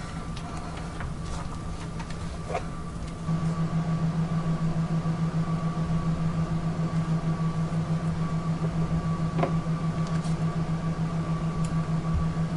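A low mechanical hum with a fast, even pulse comes in about three seconds in and runs on steadily. A couple of soft knocks sound as a box is handled.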